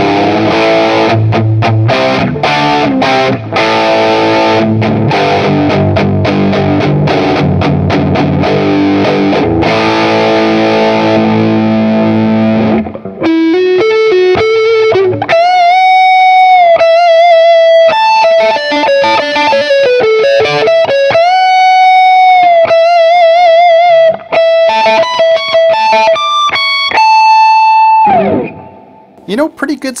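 Semi-hollow EART electric guitar played through a Mezzabarba amp's overdriven channel two. It starts with strummed, driven chords; about halfway in it moves to single-note lead lines high on the neck, with long ringing notes and wide vibrato. Near the end the last held note bends down in pitch.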